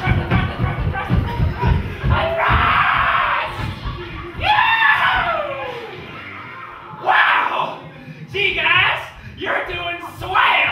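Stage performers whooping and shrieking over music with a thumping beat; one long yell slides down in pitch about halfway through, and high shrieks follow in short bursts near the end.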